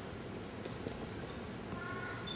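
Low, steady background hiss of the room's open microphone, with a few faint, brief high-pitched tones.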